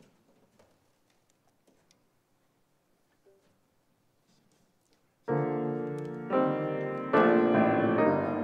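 Near silence with a few faint small knocks for about five seconds, then a grand piano comes in loudly with full chords, struck about once a second.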